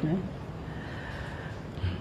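A man's voice gives a short falling vocal sound right at the start, then a pause in his speech that holds only faint, steady background hiss.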